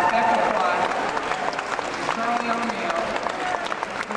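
Audience applauding, many hands clapping, with voices faintly underneath.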